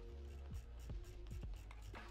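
Faint background music with a steady held tone, and a handful of soft, irregular clicks from working at a computer desk.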